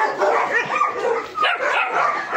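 Several young dogs barking and yipping, short calls overlapping one another throughout.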